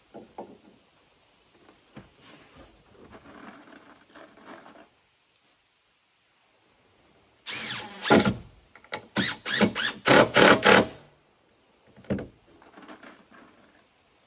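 Cordless drill driving a screw into wood in a run of short trigger bursts, the loudest part, ending about eleven seconds in. Before it come quiet knocks and taps of handling on the wooden deck.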